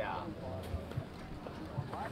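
A man's brief "yeah", then low outdoor background with faint distant voices and a few soft short knocks.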